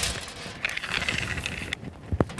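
Hands handling monofilament fishing line over a table: a light tap, then a soft rustling scrape that stops just before the end.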